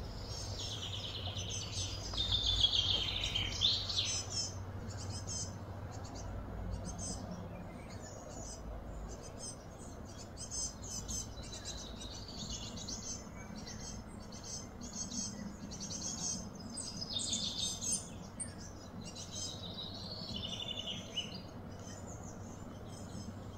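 Small birds chirping and calling over a steady low background hum. The calls are loudest in the first few seconds, with falling notes, and return near the end.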